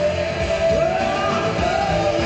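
Live pop-rock band playing with a woman singing lead, holding and sliding long notes, heard through a large hall's PA.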